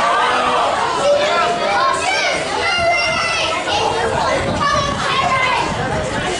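Many children's voices shouting and calling over one another during play, with a few high-pitched cries.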